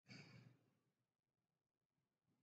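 Near silence, with a brief faint exhale, like a sigh, in the first half second.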